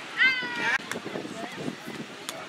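A short, high-pitched shout, dropping in pitch and then held briefly, from a woman during a beach volleyball rally, over low background chatter.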